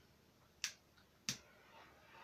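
Two short, sharp clicks, about two-thirds of a second apart, against a quiet room.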